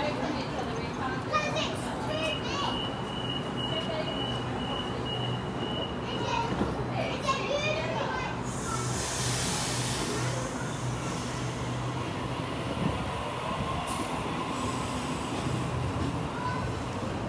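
Sydney Trains A set (Waratah) electric train at the platform with voices of boarding passengers. A steady high tone sounds for about four seconds. The train then pulls out about eight seconds in with a rush of noise and a steady electric hum.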